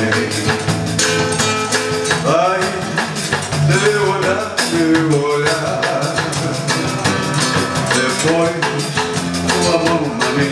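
Live samba played by a small band: acoustic guitar strumming, electric bass and drum kit keeping a steady rhythm, with a melodic line gliding over it.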